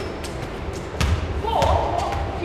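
Soccer ball being struck by a foot and bouncing on a concrete floor during keepy-uppy: a light touch, then a heavier thud about halfway through.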